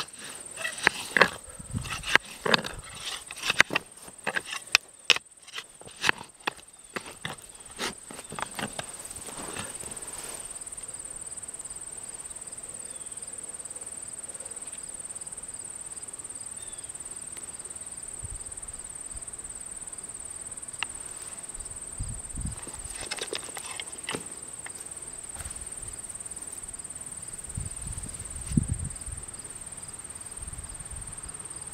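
A long-handled digging tool stabbing into dry soil, a quick run of sharp crunches and scrapes over the first ten seconds or so as a potato plant is dug out, then only occasional soft soil handling. A steady high insect drone runs underneath.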